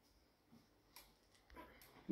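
Near silence with a few faint clicks, about half a second and one second in, and a soft faint rustle near the end.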